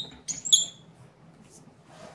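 Short, high-pitched squeaks of metal rubbing on metal from a C-stand grip head and arm as a black flag is fitted and the knuckle is turned, two quick squeaks about half a second in.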